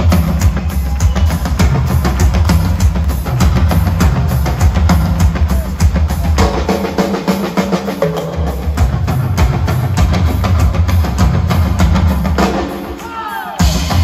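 Live drum solo on a Drum Limousine drum kit with Avantgarde cymbals: dense, fast playing with heavy bass drum and toms under the cymbals. It eases off briefly near the end, then comes back in at full strength.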